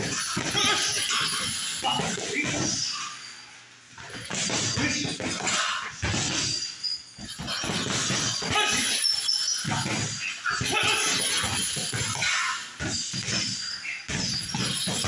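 Punches landing on hanging heavy bags in irregular flurries, the bags' chains rattling, with voices among the blows; there is a short lull about three seconds in.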